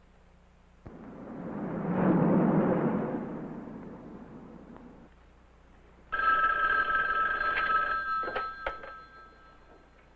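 A rush of noise swells and fades over about four seconds. Then a telephone bell rings once, a bright two-tone ring lasting about two seconds, and dies away.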